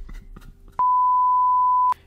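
An edited-in censor-style bleep: one steady, high-pitched pure beep a little over a second long that starts and cuts off abruptly, laid over a fluffed take.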